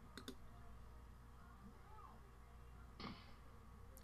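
Near silence with two or three quick computer mouse clicks just after the start, then a faint short burst of noise about three seconds in.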